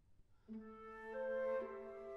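An orchestra begins about half a second in, with the flute and other woodwinds playing held notes that stack into a slowly shifting chord.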